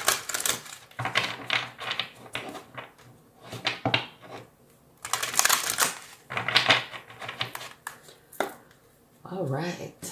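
A deck of oracle cards being shuffled by hand, in several bursts of quick clicking with short pauses between.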